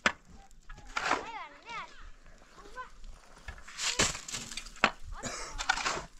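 Building-site work sounds: sharp knocks and rough scraping bursts, like a shovel working mortar against a wheelbarrow. A person's voice calls out with a wavering pitch about a second in.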